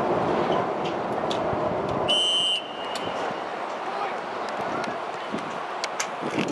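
Referee's whistle: one short, steady blast about two seconds in, signalling the kickoff, heard over voices and outdoor background noise.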